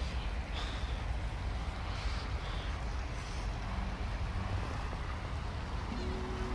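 Steady low rumble of outdoor city ambience: wind on the microphone over distant street traffic.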